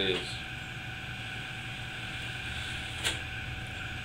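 A sheet of paper sliced once on the freshly sharpened edge of a garden hoe blade, heard as one short sharp snip about three seconds in, testing how sharp the edge is. A steady low shop hum runs underneath.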